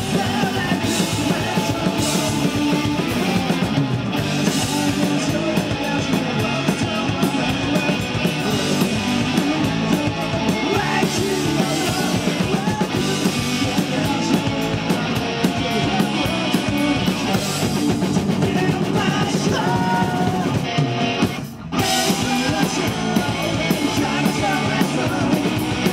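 Rock band playing live on electric guitars, bass and drum kit, dense and loud throughout. The playing breaks off for an instant near the end, then comes straight back in.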